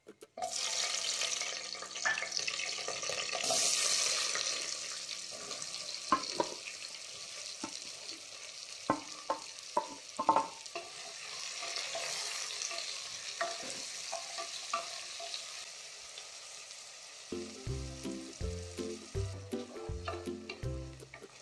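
Whole spices and green chillies sizzling in hot oil in an aluminium pressure cooker, a steady frying hiss. Around the middle there is a run of sharp clicks and clatters as sliced onions are tipped into the pot. Background music comes in near the end.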